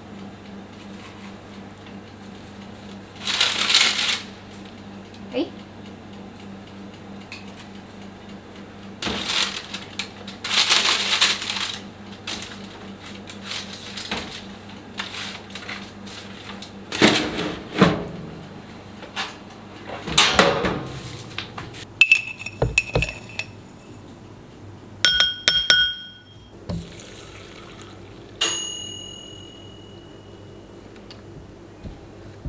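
Coconut flakes and granola rustling in several bursts as they are scattered and spread by hand over a parchment-lined baking tray, over a low steady hum that stops about two-thirds through. Near the end come a few short, light clinks of dishes, the last one ringing briefly.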